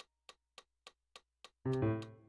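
Steady metronome clicking, about three and a half ticks a second, with no notes sounding, until a loud, dense atonal chord is struck on a digital piano about 1.6 s in and begins to fade.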